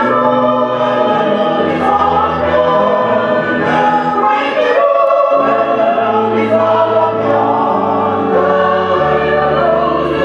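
Church choir singing together, holding long, slow notes.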